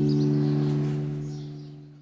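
A strummed acoustic guitar chord ringing out and fading away as a short music sting ends.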